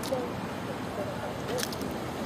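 Outdoor city ambience: a steady background of distant noise with faint far-off voices, and a couple of brief clicks, one right at the start and one about one and a half seconds in.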